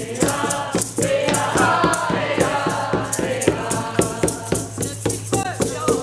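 A group singing a chant in unison over a steady, quick hand-drum beat, with a rattle shaken along.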